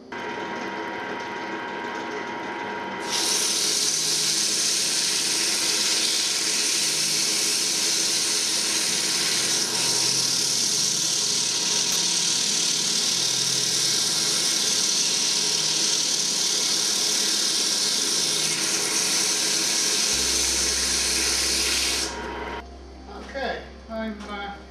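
Wood lathe running with a segmented wooden bowl spinning on it. From about three seconds in, sandpaper held against the turning bowl adds a loud, steady hiss, which stops a couple of seconds before the end.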